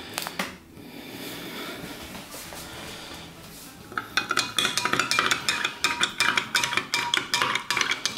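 A long metal spoon stirring powdered iced-tea mix into a glass of water, clinking rapidly against the glass with a bright ringing. The clinking starts about halfway through and keeps going, several strikes a second.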